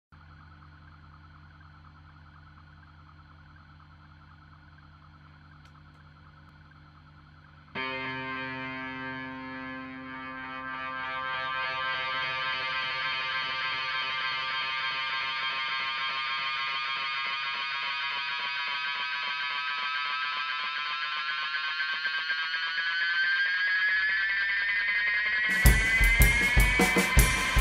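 Intro of an instrumental band track: a faint steady hum, then about eight seconds in a sustained, distorted electric tone rich in overtones comes in suddenly and slowly rises in pitch, growing louder. Drums come in at the very end.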